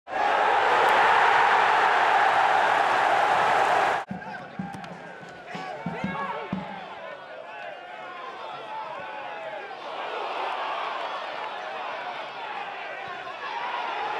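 Football match sound: a loud, even rush of noise that cuts off suddenly about four seconds in, then the stadium crowd shouting and chanting, with a few dull thuds of the ball being kicked. The crowd grows louder from about ten seconds in.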